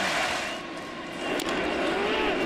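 Ballpark crowd murmur: a steady haze of many voices, dipping for a moment near the middle, with a single short click about one and a half seconds in.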